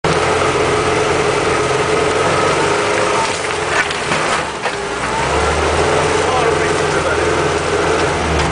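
UAZ 469 off-roader's engine and drivetrain running as it drives slowly over rough grass, heard from inside the vehicle, with a steady whine over the low engine hum that fades about three and a half seconds in.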